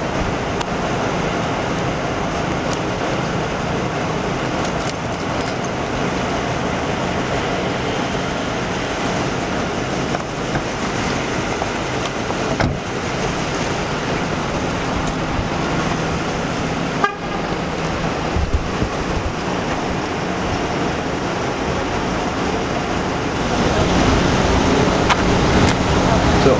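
Steady street vehicle noise: a car engine running nearby with an even low hum.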